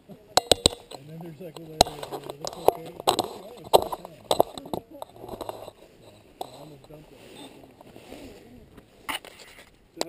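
A group of people talking a few metres away, mostly unclear, with several sharp clicks and knocks close to the microphone, a quick run of them within the first second and a last one near the end.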